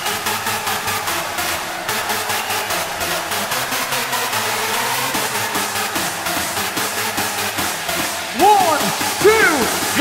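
Electronic dance music with a steady driving beat. About eight seconds in it gets louder as a lead sound enters, swooping up and down in pitch.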